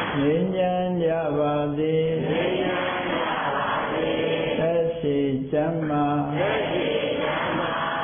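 A man's voice chanting a Buddhist recitation in long phrases, each held on a few steady pitches, with short breaks for breath between them.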